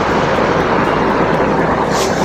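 Steady, loud rushing noise with no breaks or rhythm.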